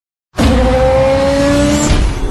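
Racing-car sound effect: a loud screech like squealing tyres, with a tone that rises slowly, starting suddenly about a third of a second in and cutting off abruptly at the end.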